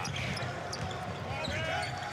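Game noise from a basketball court: the ball being dribbled, with short rising-and-falling sneaker squeaks on the hardwood in the second half, over the murmur of an arena crowd.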